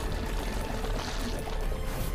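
Dramatic action-scene score with a held tone and a deep rumble, under a dense, steady rushing wash of fight sound effects.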